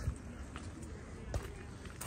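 Quiet outdoor background noise with a couple of faint footsteps on gravel, about a second apart.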